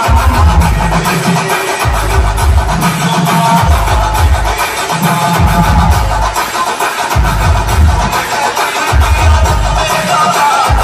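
Loud electronic dance music played through a big outdoor DJ speaker rig, with heavy bass coming in blocks about every two seconds.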